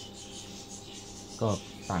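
Steady whir and hiss of a desktop computer's cooling fans, with a man's voice coming in near the end.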